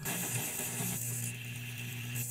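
End-logo sound effect: a steady hiss with a low, even hum beneath it, starting abruptly.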